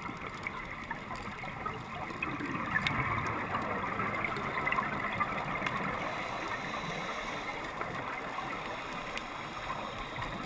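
Gurgling, bubbling water, a steady wash that swells louder for a few seconds in the middle.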